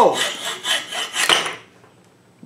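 Hacksaw cutting a wooden dowel where it sticks out of the end of a steel tube clamped in a vise: about four quick back-and-forth strokes, stopping about a second and a half in.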